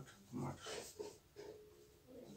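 A man's voice murmuring faintly under his breath while working a sum, ending in a short held hum.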